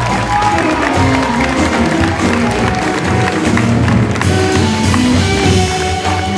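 Live jazz ensemble playing, with piano over a walking bass line; the sound changes about four seconds in.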